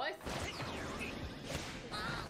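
Anime sound effects: a short shout, then whooshing motion sounds and one sharp smack about one and a half seconds in.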